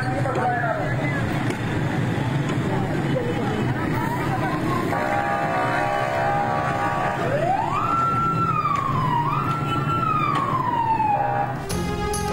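Busy street noise with voices shouting, a steady horn-like tone held for about two seconds midway, then a siren that rises, falls, rises again and falls away over the last few seconds.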